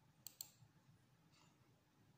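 Two quick, faint clicks of a computer mouse a little after the start, otherwise near silence.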